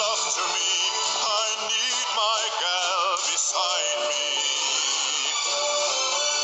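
A slow song sung by a voice with a wide vibrato over instrumental backing, in phrases, with a held note near the end.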